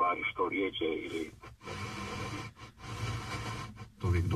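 Car FM radio scanning the band: a talk station (HRT-HR 1) comes in with thin, band-limited speech for about a second and a half, then the tuner steps on and gives stretches of static hiss broken by brief mutes between frequencies.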